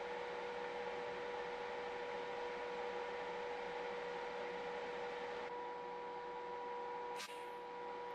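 A steady low hum with an even hiss, a faint constant tone underneath, and a single short click a little after seven seconds.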